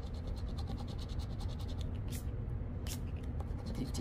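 A scratch-off lottery ticket being scraped with a small plastic scraper: rapid back-and-forth scratching strokes, with two louder single scrapes in the second half.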